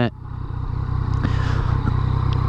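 Yamaha FZ-09 motorcycle's three-cylinder engine running on the road, a steady low pulsing rumble that grows gradually louder.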